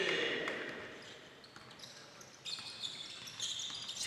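Basketball dribbled on a hardwood gym floor during live play, with high-pitched sneaker squeaks on the court from a little past halfway.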